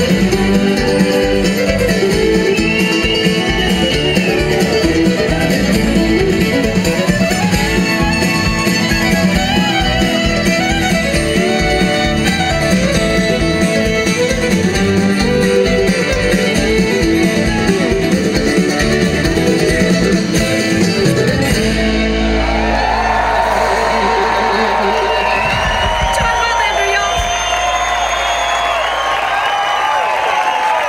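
A live bluegrass band plays an up-tempo tune on fiddle, mandolin, acoustic guitar, upright bass and drums. The tune stops about two-thirds of the way through, and the audience breaks into loud applause, cheering and whoops.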